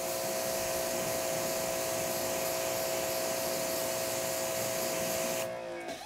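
Greenworks electric pressure washer spraying a jet of water onto a car hood: the steady hiss of the spray over the motor and pump's steady whine. It shuts off shortly before the end.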